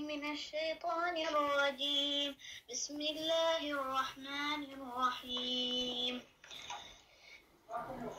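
A child reciting Quranic Arabic in a melodic chant, in a high voice, holding long notes phrase by phrase. The recitation falls quiet about six seconds in.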